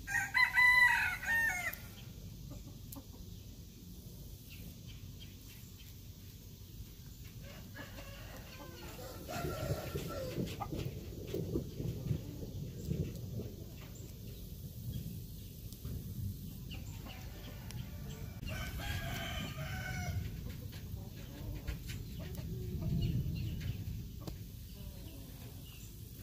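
A rooster crows: one loud crow right at the start, lasting about a second and a half, and a fainter crow about two-thirds of the way through.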